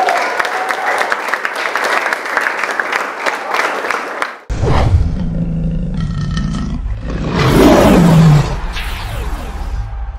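A small group clapping and cheering, cut off abruptly about four and a half seconds in. Then a club logo sting: a deep rumbling intro building to a lion's roar sound effect that falls in pitch, the loudest moment, over music.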